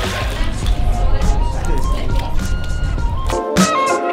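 Background music with a steady bass beat. Near the end the bass drops out briefly, then the track returns fuller, with sustained layered tones.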